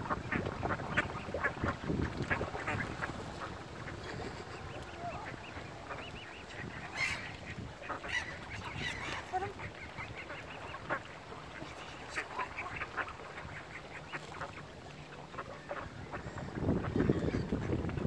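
Mallard ducks quacking among other waterbird calls, many short calls overlapping throughout, with a louder low rumble near the end.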